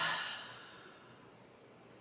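A woman's audible exhale, a breathy sigh that fades out within about the first half second, followed by faint room tone.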